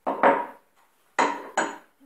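A small glass jar knocked about and set down on a wooden table next to a glass bowl of flour. There is a clatter at the start, then two sharp knocks a little over a second in.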